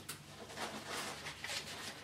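Faint handling sounds of boxed packaging, with a few light knocks and rustles as cardboard boxes are set down and picked up.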